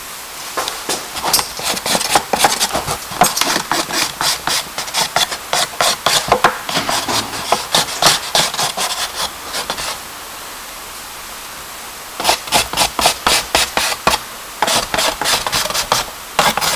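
Charcoal stick scratching across paper in quick, short drawing strokes, several a second. The strokes stop for about two seconds a little past the middle, then start again.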